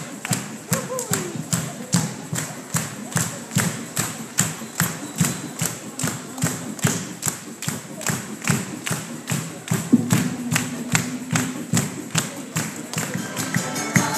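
Folk dance music built on a steady, even drum beat, about three beats a second. There is a short shout near the start and a held low note from about ten seconds in.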